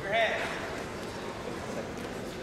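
Faint voices and room noise in a gym around a wrestling bout, with one short high-pitched squeal just after the start.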